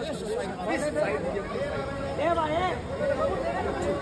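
Overlapping chatter of a small crowd of people talking at once, with one voice standing out about two seconds in.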